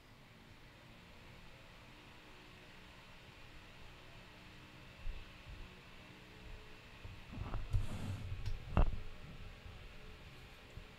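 Electric stand fan running on its highest speed, a faint steady rush with a light high whine, heard from the rear of a cardioid dynamic microphone so its pickup is weakened. Near the end, a few thumps and knocks as the microphone is handled and turned around on its arm.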